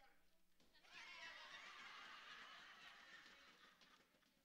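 Near silence, with faint, indistinct voices for about three seconds starting about a second in.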